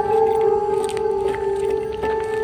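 Ambient background music: a drone of two long held tones, with a few faint clicks over it.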